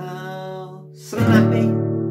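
Nylon-string classical guitar: a chord rings and fades, then a new chord is strummed about a second in and rings on.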